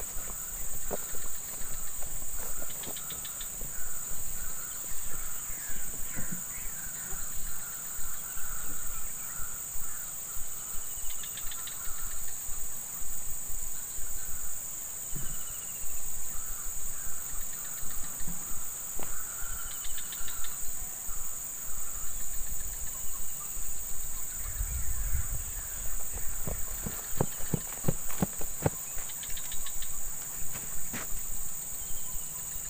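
Insects droning steadily at a high pitch. Beneath the drone runs a softer string of short chirping calls, with scattered clicks and knocks that cluster near the end.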